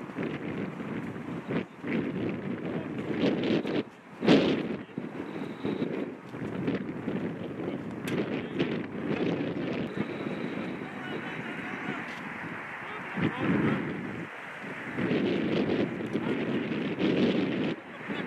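Outdoor field sound during a lacrosse drill: wind buffeting the microphone, with indistinct voices of players calling out. A few sharp knocks stand out, the loudest about four seconds in.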